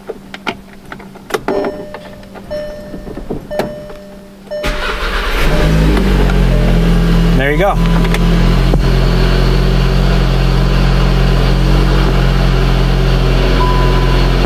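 A 2017 VW Golf SportWagen's turbocharged four-cylinder, on a freshly flashed ECU tune, heard from inside the cabin. It is quiet for the first few seconds apart from small clicks as the key is turned on. About four and a half seconds in the engine fires and starts, then settles into a steady idle, which shows that the car still starts after the flash.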